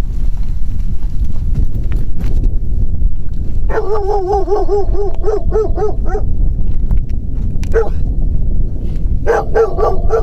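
A dog yelping in quick runs of short cries that rise and fall, about four a second. The first run comes a few seconds in, a single cry follows, and a second run starts near the end. A steady low rumble runs underneath.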